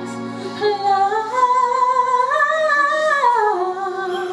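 A woman singing solo into a microphone, holding long melismatic notes. The line climbs about a second in, holds high, then slides back down near the end.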